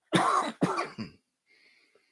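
A man coughing three times in quick succession, each cough shorter and weaker than the one before.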